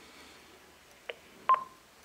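Answering-machine playback at the end of a recorded message: a faint click, then about half a second later a louder click with a short beep.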